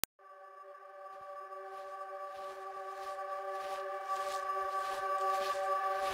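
Opening of a chillout electronic music track: a held synth chord fades in and slowly grows louder, with soft hissy percussion strokes a little under two a second coming in partway through.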